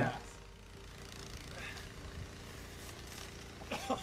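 Mostly quiet background with a faint steady hum, then a man's short laugh near the end.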